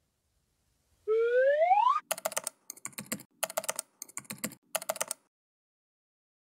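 Outro sound effects: a short rising tone about a second in, then five quick bursts of computer-keyboard typing clicks.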